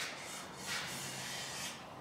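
Faint rubbing of a cloth wiped over a painted car-body end cap, two soft swishes over a low steady hiss, as the part is wiped down ahead of clear coat.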